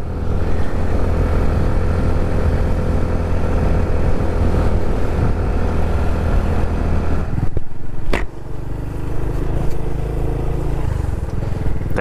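Honda Pop 110i's small single-cylinder four-stroke engine running steadily as the motorcycle rides along. About eight seconds in the engine note dips, with one sharp click, then carries on at a lower level.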